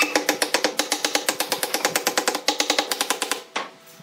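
Wooden mallet knocking rapidly on the joints of a wooden chair frame. The quick run of knocks rings with a hollow wooden tone, stops a little past three seconds, and is followed by one more knock.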